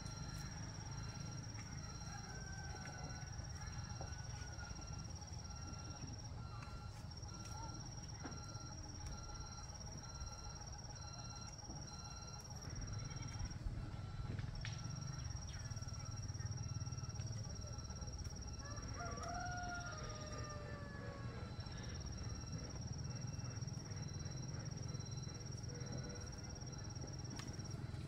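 Outdoor rural ambience: a steady high-pitched insect drone that cuts out and starts again every few seconds over a low rumble. A faint rooster crows once about 19 seconds in, as a falling call of about a second and a half, and there is a single knock near the middle.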